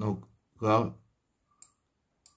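A voice speaks two short words, then a single sharp computer mouse click about one and a half seconds in.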